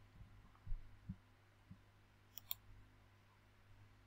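Faint computer mouse clicks over a low steady hum: a few soft low thumps early on, then a quick pair of sharp clicks about halfway through.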